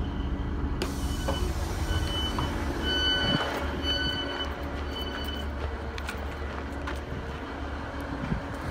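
Class 150 Sprinter diesel unit's doors opening about a second in after the Open button is pressed, followed by a run of evenly spaced door-warning beeps lasting several seconds. The underfloor diesel engine idles with a steady low drone throughout.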